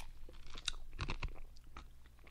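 A few faint, short clicks and crackles close to a microphone, over a low steady hum.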